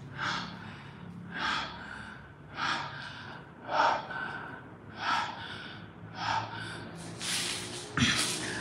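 Man breathing heavily and fast close to the microphone, about seven sharp breaths at an even pace, over a faint steady low hum.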